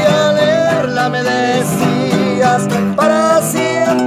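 Several acoustic guitars playing together: a picked melody line over strummed chords. This is the instrumental introduction to a sung ballad.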